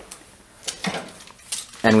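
A few faint, light clicks or clinks spread through a short pause, then a man's voice begins near the end.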